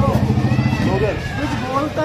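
A motor vehicle's engine idling close by, a steady low hum that fades about a second in, under the voices of people in the street.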